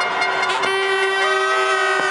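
Several horns blowing together, a chord of steady tones at different pitches held on. A higher horn comes in and drops out again about a second in.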